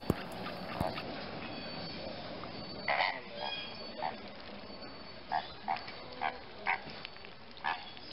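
A flock of flamingos calling: short honking calls, about eight of them scattered through the second half, over steady background noise.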